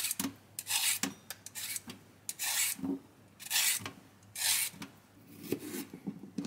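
A vegetable peeler scraping down a raw carrot in repeated rasping strokes, about one a second.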